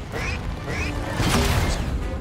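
Cartoon action music mixed with rocket-pack sound effects: a dense rushing noise with two short rising chirps in the first second and a louder noisy swell about a second and a half in.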